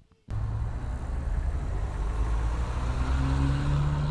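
Tram running with a steady low rumble and a low hum that rises slightly in pitch; it starts abruptly just after the beginning.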